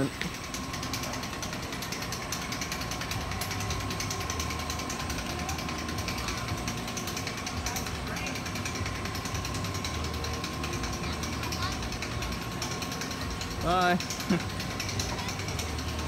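Family roller coaster train rolling slowly along its tubular steel track through the station, a steady mechanical clatter over a low rumble.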